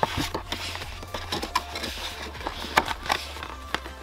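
Background music with a steady bass line over a cardboard product box being handled: light taps, clicks and rustles as the box's paper tab and flaps are opened.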